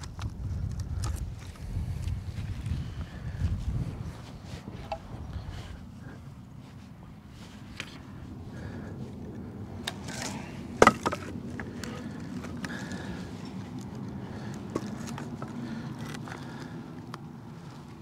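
Split hedge (Osage orange) firewood being handled and shifted in a tote, with scattered small knocks and clicks of wood on wood and one sharp knock about eleven seconds in. A low rumble of handling noise runs through the first few seconds.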